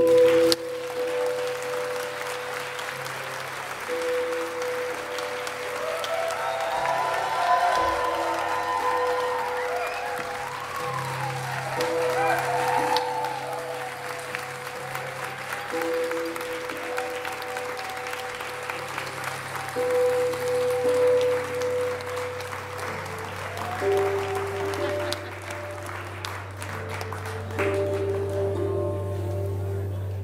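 Audience applauding, with cheering voices mid-way, over a sustained drone of held musical tones still sounding from the stage.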